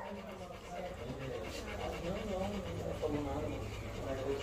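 A pit bull panting quietly.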